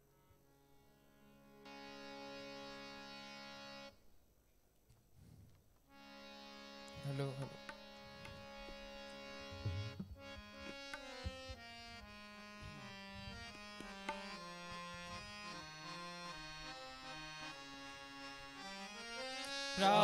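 Harmonium playing an introduction: a held reedy chord, a short pause, a second held chord, then from about ten seconds in a stepping melody, with a few light tabla strokes.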